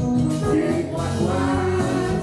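Worship music: singing over instrumental accompaniment, with sustained notes.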